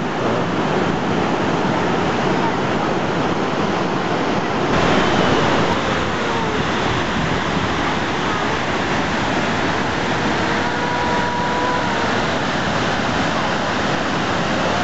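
Steady, loud rush of falling water from the Marmore Falls, growing a little louder about five seconds in.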